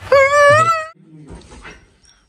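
A high, drawn-out wailing cry from a film clip of a man crying, lasting under a second and rising slightly in pitch, followed by quieter sobbing or mumbled voice.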